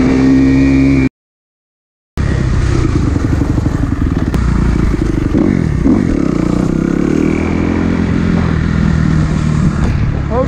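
Kawasaki KX250F single-cylinder four-stroke dirt bike engine running while riding, heard up close from the bike. Its pitch falls and climbs again around the middle as the throttle is eased and reopened. About a second in, the sound cuts out completely for about a second.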